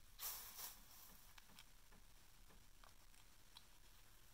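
Near silence, with a brief soft rush of noise just after the start and then a few faint ticks: small handling noises from a plastic squeeze tube and its cap.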